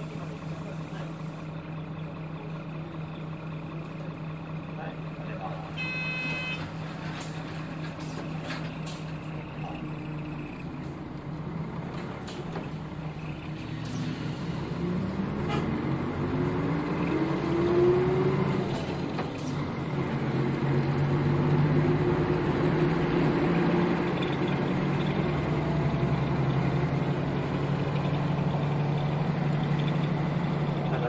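Nissan Diesel KL-UA452KAN city bus heard from inside, its diesel engine running steadily at first. A short electronic chime sounds about six seconds in, with a few clicks after it. From about twelve seconds the engine grows louder and rises in pitch in repeated sweeps as the bus pulls away and accelerates through the gears.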